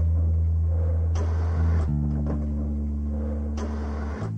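Film soundtrack music of low, held bass notes that move to a new chord with higher notes added about two seconds in, with two faint clicks.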